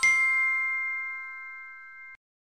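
A bell-like chime sound effect: a struck chord of several notes ringing and slowly fading.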